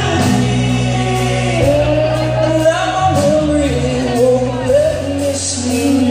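Rock band playing live: a male singer holding long, sliding vocal notes over electric bass, electric guitar and drums.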